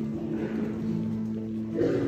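Church music with guitar: a long held chord that moves to a new chord just before the end.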